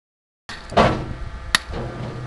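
Hammer striking a steel point chisel against a red sandstone block, dressing its face by pointing. There is a loud, dull knock just under a second in, then a sharp, ringing metallic strike in the second half.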